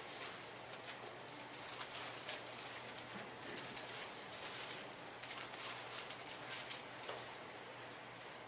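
Faint rustling and scattered soft clicks of Bible pages being turned by the congregation, over a low steady room hum.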